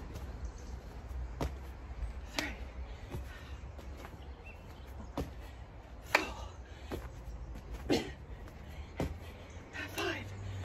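A person doing chest-to-floor burpees on an exercise mat: sharp hand claps and slaps of hands and body on the mat, coming in pairs about a second apart, three times.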